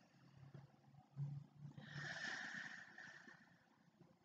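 A person taking a slow, deep meditation breath: a faint low hum about a second in, then a soft rush of exhaled breath from about two seconds in that lasts about a second and fades.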